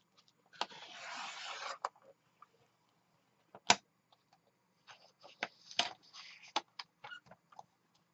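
Sliding paper trimmer drawn along its rail, its blade cutting through a sheet of paper in one rasping scrape of about a second. A sharp knock follows a couple of seconds later, then a run of small clicks and paper rustles as the trimmer and paper are handled.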